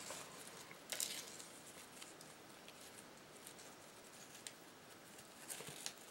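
Faint rustling of ribbon being wrapped around the neck of a glass jar and handled, with a small tap about a second in.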